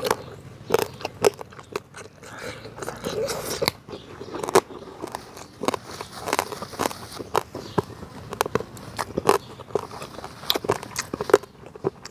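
A person chewing a mouthful of food with lips closed, with many short wet clicks and smacks from the mouth. It is picked up close by a clip-on microphone.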